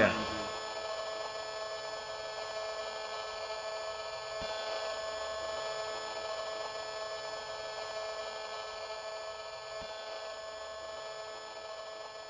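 A radio-frequency detector's speaker sounding the microwave signals from a mobile phone mast: a steady electronic buzz with several held tones that does not let up.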